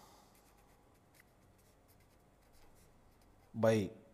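Handwriting: a run of faint, quick scratching strokes as text is written out by hand.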